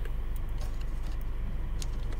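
Steady low background hum and hiss, with a couple of faint light clicks from wires being handled in a plastic junction box.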